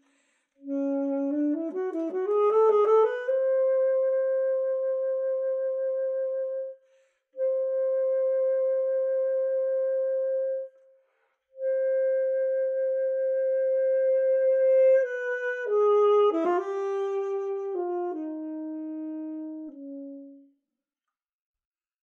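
Alto saxophone playing unaccompanied: a quick rising run, then one long high note held three times with short breaths between, then a falling line of held steps that ends on a low note near the end.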